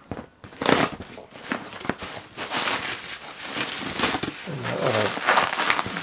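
Bubble wrap crinkling and cardboard rustling as hands dig into a packed box, in an uneven run of scrunches and rustles.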